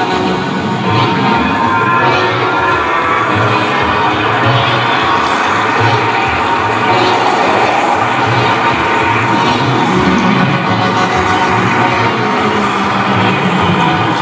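Loud live electronic music with a steady, pulsing low beat, and a crowd cheering over it.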